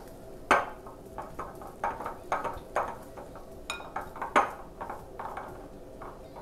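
Silicone spatula scraping and pressing stiff craquelin dough around a glass mixing bowl, gathering it into a ball: a dozen or so irregular scrapes and knocks against the glass, with one brief ringing clink about two-thirds of the way through.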